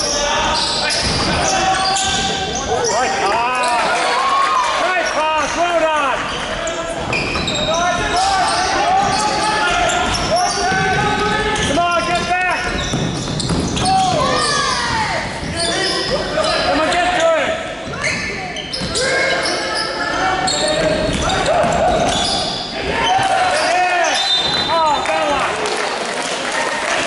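Basketball game in a large sports hall: a ball bouncing on the hardwood floor, sneakers squeaking, and players and spectators calling out.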